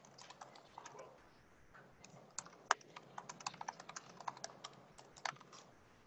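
Computer keyboard being typed on, quiet irregular key clicks that come faster from about two seconds in.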